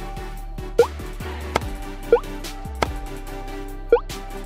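Short rising plop sound effects, three in all, play as comparison signs are picked up and dropped into answer slots in an interactive drag-and-drop quiz. A couple of sharper clicks fall between them, over steady looping background music.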